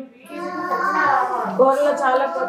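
A child's voice in long, drawn-out sing-song phrases.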